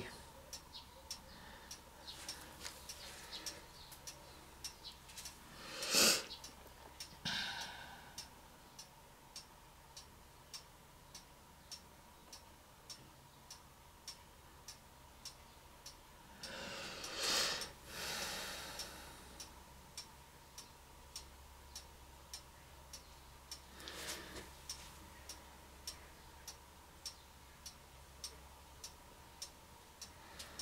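A clock ticking steadily and faintly, with a few brief soft rushing noises, the loudest about six seconds in and again around seventeen seconds.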